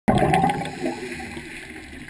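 Scuba diver's exhaled air bubbles rushing and gurgling underwater. A loud burst at the start fades within about half a second into softer bubbling with scattered pops.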